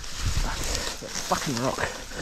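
A rider's short, wavering strained groan from the effort of heaving a fallen enduro motorcycle upright, coming about halfway through, with a few light knocks and rustles around it.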